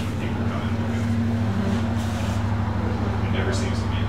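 Steady low mechanical hum at an even level, with faint voices in the background.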